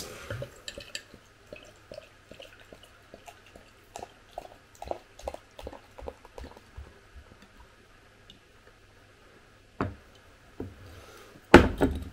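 Beer poured from a glass bottle into a glass stein: irregular glugs and splashes of liquid for about the first eight seconds, which then stop. A knock follows, and near the end a louder thud as the full stein is set down on the table.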